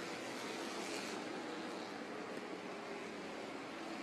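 Steady track ambience of small race cars running at a distance: an even, hiss-like hum with no clear engine note.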